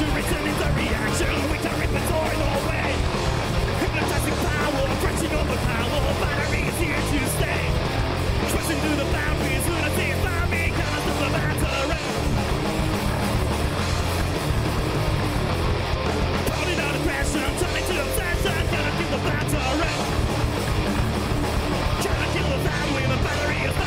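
Heavy metal band playing live: electric guitars, bass and drums, with a singer's vocals over them.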